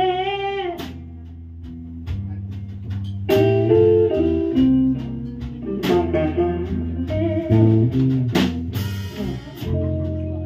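Live blues band playing an instrumental passage: a walking electric bass line under lead guitar notes, with sharp snare drum hits. A held, wavering note ends about a second in.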